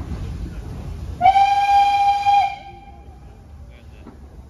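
Steam locomotive whistle giving one loud blast of about a second and a half, dipping slightly in pitch as it closes, from an SDJR 7F 2-8-0 as it moves into the platform, with a low rumble from the moving engine before it.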